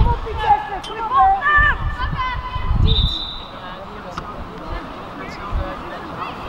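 Players shouting on a football pitch, then one short, steady referee's whistle blast about three seconds in, stopping play.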